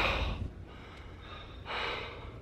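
A man sighs: a breathy exhale that fades over about half a second, then another audible breath near the end.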